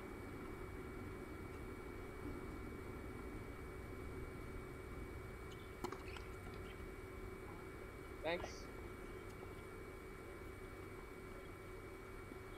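Faint murmur of voices over a steady hum, with a single sharp knock about six seconds in and a short call about eight seconds in.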